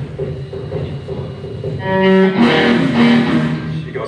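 Amplified electric guitar sounding two held notes in turn, starting a little before halfway, over a steady low amplifier hum.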